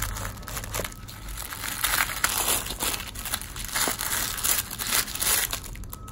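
Tissue paper being unwrapped by hand, crinkling in irregular rustles.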